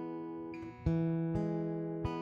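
Acoustic guitar strummed between sung lines: a chord rings and fades, then a fresh strum comes a little under a second in, with another stroke about half a second later.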